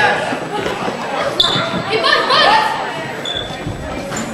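A basketball bouncing on a gym's wooden floor during a youth game, with players and spectators shouting in the echoing hall. Two short high squeaks come through, one about a second and a half in and a shorter one near the end.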